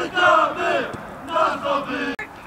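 Men's voices shouting loudly in two bursts, about a second apart.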